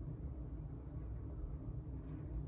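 Steady low background rumble with no distinct sounds.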